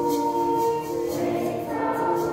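Children's choir singing, holding long notes over accompaniment that keeps a light, regular high beat.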